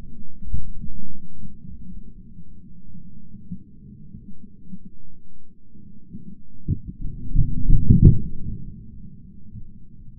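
Dull, muffled thumping and rustling of the camera wearer pushing through brush. About eight seconds in comes a muffled shotgun shot, the loudest moment.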